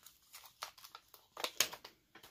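A clear stamp being peeled off its plastic carrier sheet: a run of small crinkles and clicks, loudest about one and a half seconds in.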